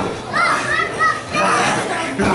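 Children in the crowd shouting out in high-pitched voices, several short calls in quick succession over general audience noise in a hall.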